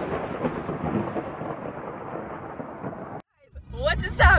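A rumbling rush of noise that thins out over about three seconds, then cuts off abruptly.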